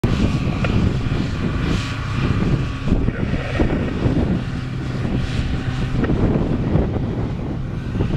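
Diesel engines of a Prentice knuckleboom log loader and a nearby wheeled logging machine running, a steady deep drone that keeps an even level throughout.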